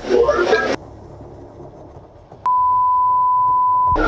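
A brief burst of voices and noise cuts off suddenly under a second in. Over two seconds in, a loud, steady single-pitched electronic bleep tone starts abruptly after a click, holds for about a second and a half, and stops sharply.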